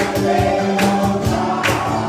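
Live gospel worship music: a man singing to acoustic guitar with keyboard, steady chords under a bright percussion hit on each beat, a little more than once a second.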